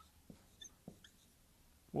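Dry-erase marker squeaking faintly on a whiteboard in a few short strokes while letters are written.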